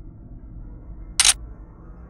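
A single short, sharp click-like sound effect about a second in, over a low steady hum.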